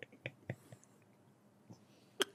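Near silence, with a few faint, short voice sounds, soft breaths or chuckles, in the first second.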